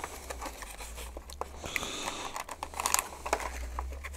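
A clear plastic blister pack being peeled open and handled, its card backing tearing away, with irregular crinkling and small plastic clicks and crackles throughout.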